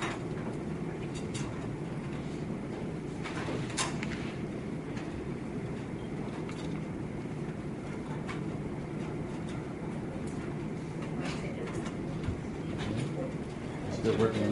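Steady low room rumble with a few scattered light clicks and rustles, like small plastic parts, plastic bags and paper being handled at a table.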